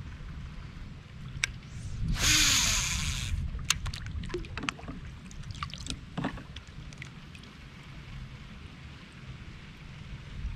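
A cast from a fishing kayak: line whirs off the fishing reel's spool for about a second, about two seconds in, with a low tone falling as the spool slows. A few sharp clicks and small knocks follow as the reel is worked, over a steady low rumble.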